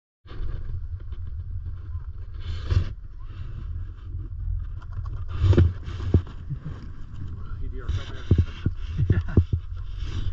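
Steady low rumble of wind and chairlift motion on a head-mounted action camera, with several sharp clunks from the chair's metal safety bar and ski poles knocking. The loudest clunks come about halfway through.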